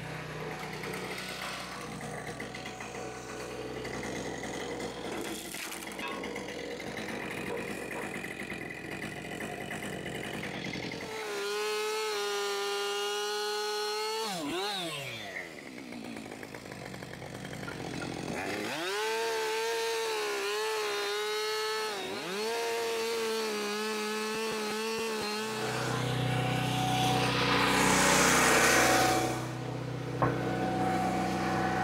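A small petrol engine running at high revs, its pitch dropping away about fifteen seconds in, then revving up again with a few brief dips in pitch. A loud rushing noise near the end.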